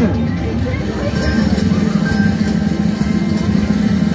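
Top Dollar slot machine playing its bonus-round music: a steady low held tone under short, bright chimes that repeat several times while the bonus board lights up prizes toward the first cash offer.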